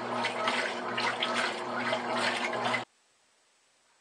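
Top-loading washing machine agitating a load of clothes in water: churning, sloshing water over a steady hum. It cuts off suddenly about three seconds in.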